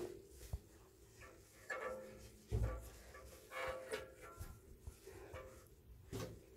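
A small child in a bubble bath making a few short vocal sounds, with a dull low bump about halfway through.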